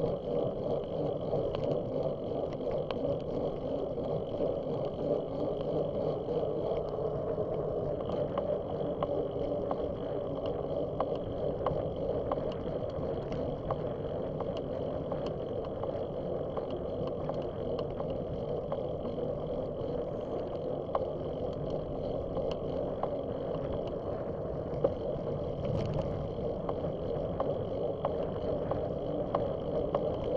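Steady ride noise from a bicycle-mounted camera rolling along a paved path: tyre rumble and wind on the microphone, with frequent small ticks and rattles and one sharper click near the end.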